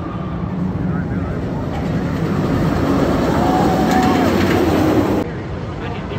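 Steel Vengeance roller coaster train running on its steel track over the wooden support structure, a rising rumble that grows louder as it approaches and drops off abruptly about five seconds in.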